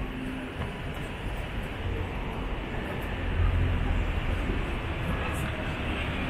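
Road traffic on a busy city street: a steady low engine rumble from passing vehicles, swelling about three and a half seconds in.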